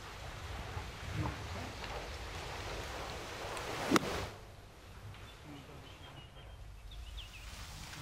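A single crisp click of a golf club striking the ball on a short pitch shot, about four seconds in, over a low, steady outdoor background.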